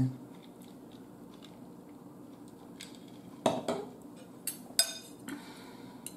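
Metal spoon clinking and scraping against a bowl of food: a few sharp clicks starting about three and a half seconds in.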